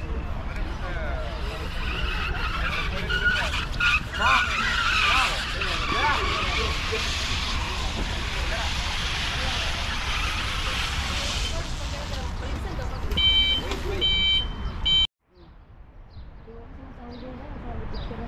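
Wind buffeting the microphone with a steady low rumble, overlaid through the middle by a hiss with wavering squeaks. About thirteen seconds in comes a short run of high electronic beeps, and about fifteen seconds in the sound cuts out suddenly and comes back much quieter.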